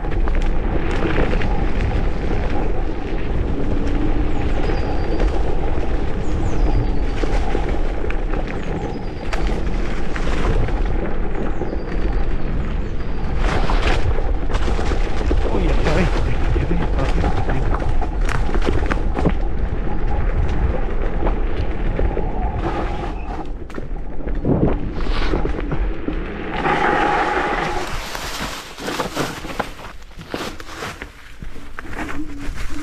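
Ride noise from an electric scooter on a rough, leaf-covered forest trail: a loud, steady rumble of wind buffeting the microphone and tyres rolling over frozen ground and leaves. Occasional sharp knocks come from bumps, twice standing out clearly.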